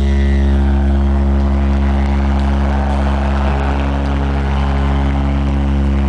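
Live amplified rock band holding one sustained, distorted low note that drones steadily without change, with a noisy wash above it.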